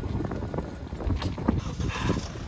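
Wind buffeting the phone's microphone outdoors: an irregular, gusting low rumble.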